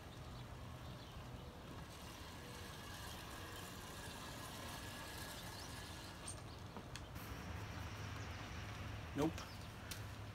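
Faint outdoor ambience: a steady low hum with a few faint bird chirps. No scooter motor is heard, because the Razor E200 electric scooter does not run. A man says "Nope" near the end.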